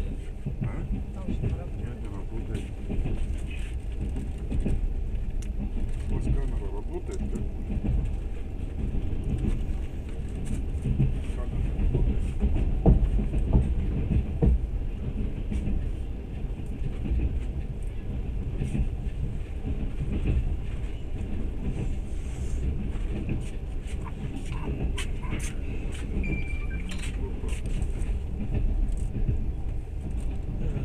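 Steady low rumble of a moving train heard from inside the carriage, with scattered light clicks and knocks.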